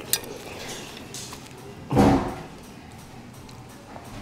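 A fork clinks on a plate once at the start. About halfway through, a man hums a short 'mmm' through a mouthful of food, falling in pitch.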